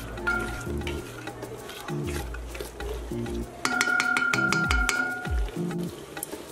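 A spoon stirring thick tomato and onion stew in an aluminium pot as it fries, with background music playing over it.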